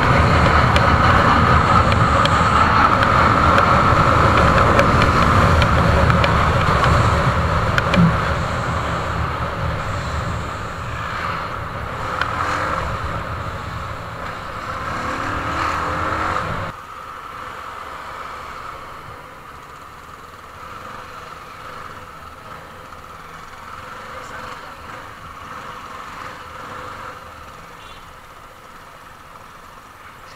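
CFMoto 250NK motorcycle ride heard from an on-bike action camera: engine running with heavy wind rush on the microphone while moving. About seventeen seconds in it drops suddenly to a much quieter engine and street sound as the bike slows into stop-and-go traffic.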